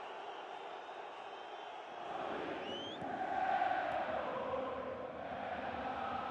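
Football stadium crowd chanting, a steady wash of voices that grows louder about two seconds in.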